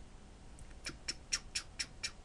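A computer mouse sliding on a desk as a line is drawn on screen, giving a quick run of short, high squeaks, about four a second, from about half a second in.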